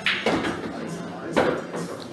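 Two sharp clacks of pool balls on a pool table, one at the start and a louder one about a second and a half later, over the voices of people in the room.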